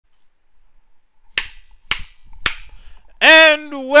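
Three sharp clicks about half a second apart, then a man's voice beginning with a long drawn-out vowel as he starts to speak.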